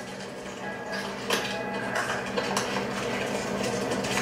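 Light clinks and rattles of small packets handled at a wire candy rack, a few faint clicks over a steady low hum.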